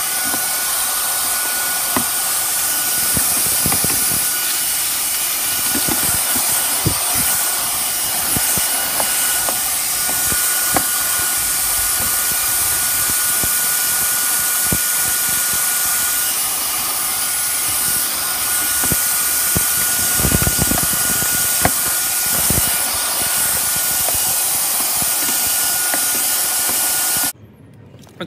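Cordless handheld vacuum cleaner with a brush attachment running steadily with a faint high whine, while the nozzle sucks up dust and debris from the plastic console and cup holders with scattered ticks and knocks. It switches off about a second before the end.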